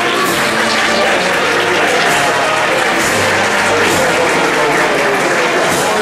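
Dense crowd applauding and talking over music, a continuous wash of clapping and voices with no breaks.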